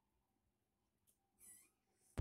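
Near silence: quiet room tone, with one brief, faint, high-pitched chirp about one and a half seconds in.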